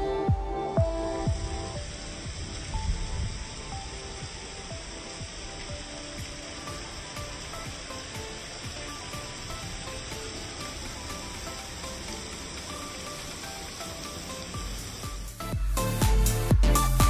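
Heavy thunderstorm rain falling steadily, an even hiss. Electronic background music fades out in the first second or two and comes back just before the end.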